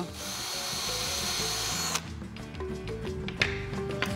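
Cordless drill boring a hole through a small wooden block, running at a steady whirr for about two seconds, then stopping abruptly.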